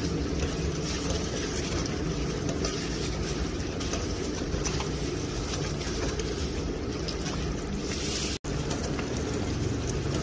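A metal ladle stirring a thick liquid in a metal pot: steady sloshing with faint clicks of the ladle against the pot. The sound drops out for an instant about eight seconds in.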